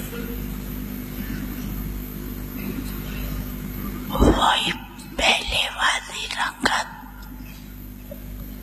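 A steady electrical hum for the first half, then an elderly woman speaking a few words into a microphone about halfway through, falling silent again before the end.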